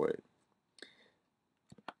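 The end of a spoken word, then a near-silent pause, then a quick run of three or four sharp clicks close together near the end.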